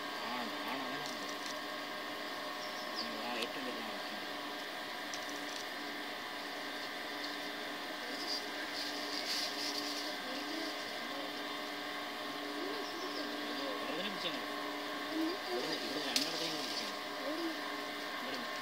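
Indistinct voices murmuring faintly over a steady hum.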